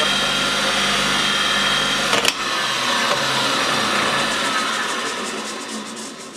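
Bench grinder motor running with its stone wheel spinning free. About two seconds in there is a sharp click, after which the hum slowly fades and drops a little in pitch, as the grinder winds down.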